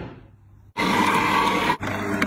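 A single sharp tap, then about a second in a loud grinding hum starts: a Hurom slow juicer's motor turning its auger as it crushes strawberries.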